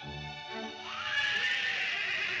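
Cartoon orchestral score. About a second in, a louder, rising cry from the cartoon dog cuts in over a hissing wash.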